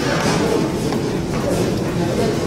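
Steady workshop room noise with faint, indistinct voices and light clatter.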